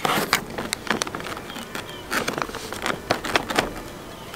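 A plastic protein-powder pouch crinkling and rustling as it is handled, in a string of irregular crackles.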